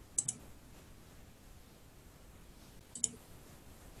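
Computer mouse clicks: two quick clicks just after the start and another quick pair about three seconds in, over faint room noise.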